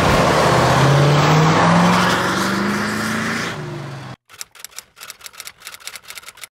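A vehicle engine accelerating, its pitch rising steadily under a loud rushing noise; it cuts off suddenly about four seconds in. A rapid run of typewriter-like key clicks follows.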